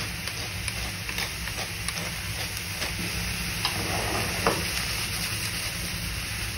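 Chopped mushrooms sizzling steadily in a frying pan, with a few light clicks and knocks as they are stirred in the pan.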